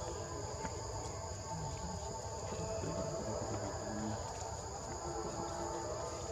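Steady high-pitched drone of insects, two thin tones held without a break.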